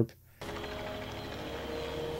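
After a short silence the film soundtrack comes in: a steady low hum of a distant helicopter approaching, under held notes of music.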